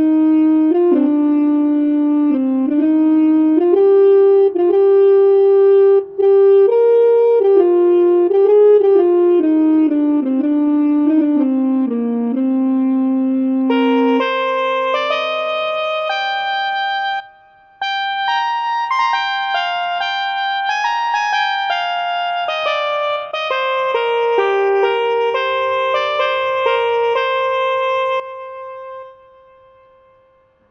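Electronic keyboard synthesizer in a dual-voice setting, playing a slow melody with a horn voice in the left hand and a trumpet voice in the right, in held notes. The lower part drops out about halfway through, leaving higher notes. The playing breaks off briefly a few seconds later, and the last note dies away near the end.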